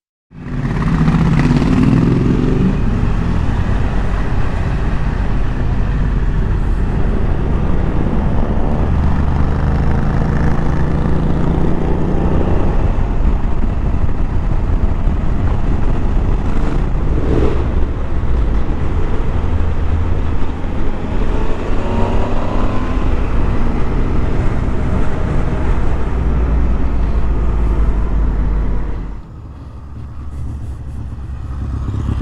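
Motorcycle engine running under way, heard from on the bike with wind noise, its pitch rising and falling with the throttle. About a second before the end the sound drops to a quieter, more distant motorcycle.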